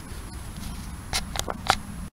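Three short rustling scuffs in the grass during the second second, the last the sharpest, over a low steady background rumble.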